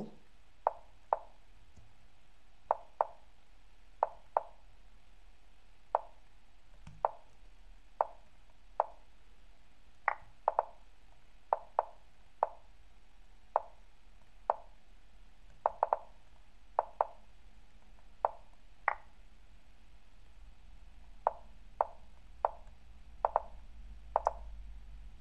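Online chess move sound effects from the lichess.org client, a short clicking tap for each move played in a fast bullet game. There are about thirty of them at an irregular pace, some in quick pairs.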